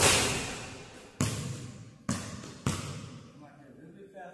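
A basketball hits the hoop, then bounces three times on a hardwood gym floor, the bounces coming closer together. Every hit echoes in the large hall, and the first is the loudest.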